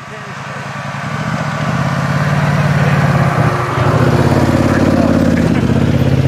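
ATV (quad bike) engine running close by, growing louder over the first couple of seconds, then holding a steady hum with a brief dip about three and a half seconds in.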